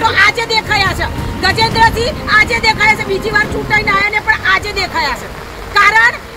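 A woman speaking continuously and rapidly, with a low background rumble beneath.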